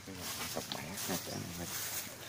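Indistinct human voice: several short voiced sounds with bending pitch, not clear speech.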